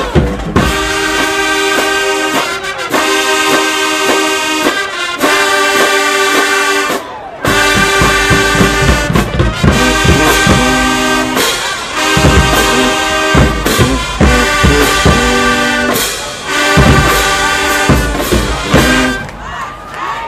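High school marching show band playing: brass and woodwinds in loud held chords over drums, with a short break about seven seconds in and the music stopping a little before the end.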